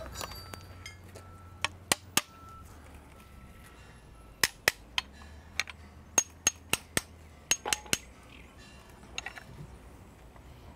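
Pieces of scrap metal struck together by hand, tried out for their sound as percussion: about a dozen sharp metallic clinks in short groups of two to four, some with a brief high ring, the last few fainter near the end.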